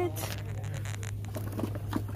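Faint scattered clicks and light rustling over a steady low hum.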